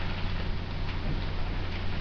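Steady hiss of a webcam microphone with a constant low electrical hum underneath.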